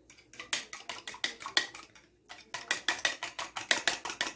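Fork whisking eggs in a bowl: rapid clicking strokes against the bowl, breaking off briefly about two seconds in and then going on faster.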